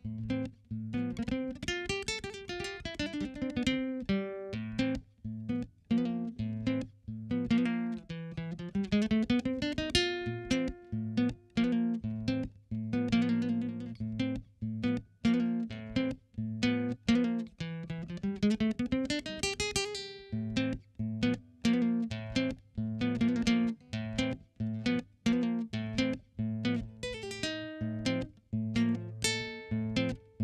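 Solo nylon-string classical guitar played fingerstyle: a steady low bass under melodic runs that climb and fall several times.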